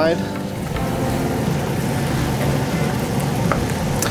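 Mushroom sauce with freshly added stock simmering in a sauté pan, a steady hiss over the hum of a range exhaust fan.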